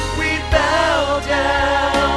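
Live praise and worship music: several singers with microphones singing over keyboard accompaniment and a sustained low bass, with a single low hit about half a second in.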